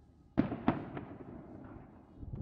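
Aerial fireworks bursting overhead: two sharp bangs about a third of a second apart, a lighter third bang soon after, each trailing off in a low rolling echo.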